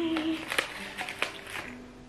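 A few sharp clicks and taps from handling a small wooden ex libris stamp, over faint sustained background music, with a brief vocal hum at the start.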